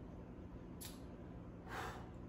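A man's breathing after a sip of a drink, faint over room tone: a short breath about a second in, then a longer, louder breath near the end.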